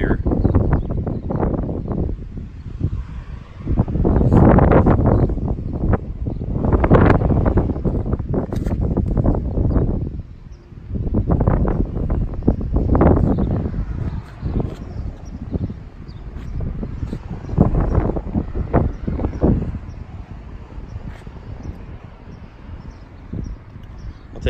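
Wind buffeting the microphone in irregular gusts, a deep rumbling rush that swells and fades every second or two.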